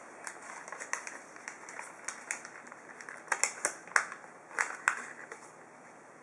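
A sheet of origami paper being folded and creased by hand, with irregular crinkles and sharp crackles that are loudest and closest together in the second half.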